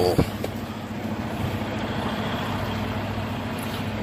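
Semi truck's diesel engine running steadily at low revs, heard from inside the cab while the rig reverses slowly.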